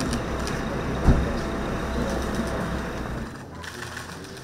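Street ambience with a car engine running nearby, a single thud about a second in. A little after three seconds the low rumble drops away to a quieter room background.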